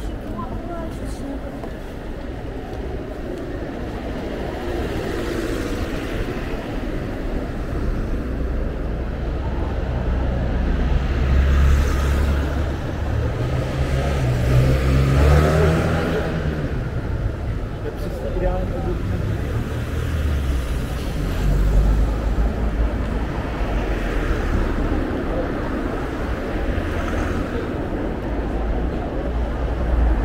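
Busy city street: cars driving past close by with people talking nearby. One vehicle passes loudest about halfway through, its low engine note rising and then falling away.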